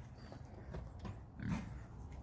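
A pig gives one short, low grunt about one and a half seconds in, over a faint low rumble.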